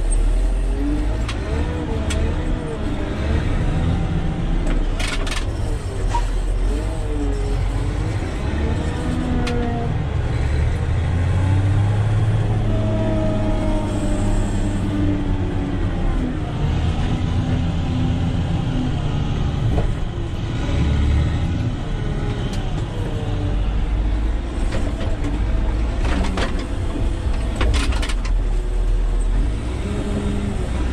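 Caterpillar 120K motor grader's diesel engine running steadily, heard from inside the cab, its pitch rising and falling as the machine works. A few sharp clicks are heard about five seconds in and again near the end.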